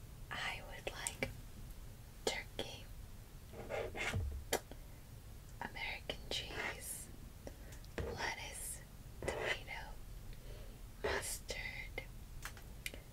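Soft whispered speech in short phrases, with breathy hiss and small clicks between them.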